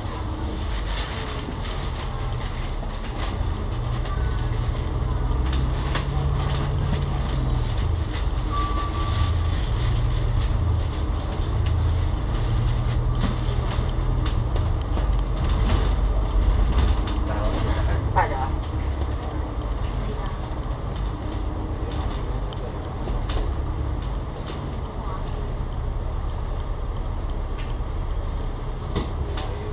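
Cabin sound on the upper deck of a KMB Alexander Dennis Enviro500 MMC double-decker bus: the Cummins L9 diesel engine and ZF EcoLife automatic gearbox running under way, a steady low drone whose pitch shifts as the bus drives on and slows to a stop. A short squeal comes about two-thirds of the way through.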